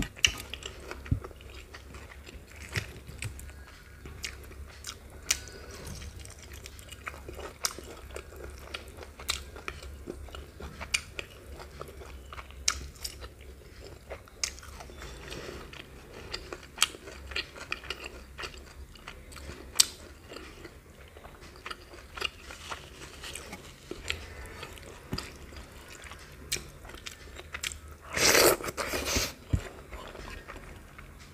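Close-miked chewing and wet mouth sounds of someone eating rice and curry by hand, with many scattered sharp clicks and small smacks. About two seconds before the end a louder rustling burst lasts about a second.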